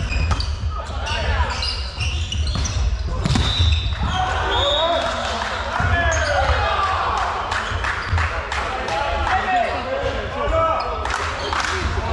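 Indoor volleyball match sounds: sharp ball strikes and footwork on the wooden court in the first few seconds, then players' calls and voices, all echoing in a large sports hall.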